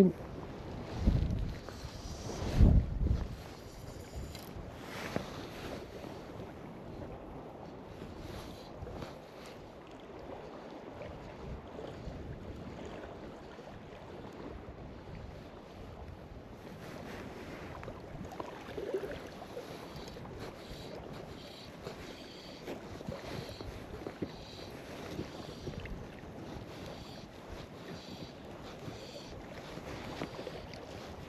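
Wind blowing across the microphone over the wash of small choppy waves on a loch. Two loud low gusts buffet the microphone in the first few seconds, then the wind and water noise settle to a steady level.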